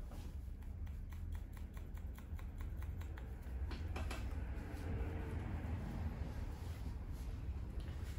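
Barber's scissors snipping hair: quick runs of small crisp clicks, dense in the first few seconds and sparser after, over a low steady hum.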